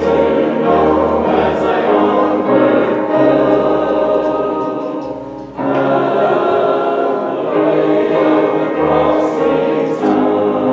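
Choir singing sustained, held notes over a low accompaniment. The sound dips briefly just past halfway, then a new phrase comes in at full strength.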